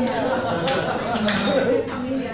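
Busy café ambience: other customers talking, with a few clinks of dishes and cutlery around the middle.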